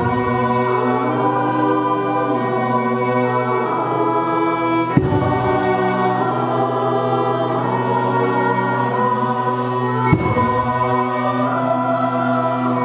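A choir singing sustained chords with violin accompaniment over a steady low held note. Two short clicks cut through, about five and about ten seconds in.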